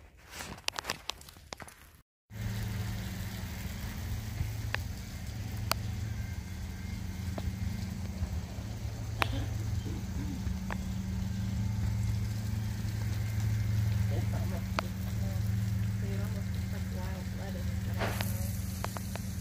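A few light clicks and knocks, then a sudden break, after which a steady low machine hum runs on, with a few faint ticks over it.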